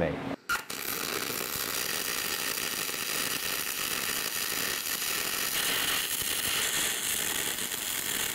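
MIG welding arc on aluminum: a steady crackling hiss that strikes up about half a second in and runs on evenly.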